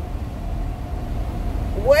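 Steady low rumble inside a car's cabin, typical of the engine running. A woman's voice starts near the end.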